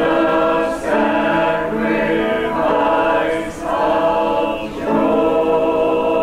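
A mixed church choir of men's and women's voices singing together in harmony, in sustained phrases with brief breaks between them.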